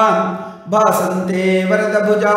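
A man chanting Sanskrit devotional verses in a melodic, sustained recitation, with a short break about half a second in before the chant resumes on a long held note.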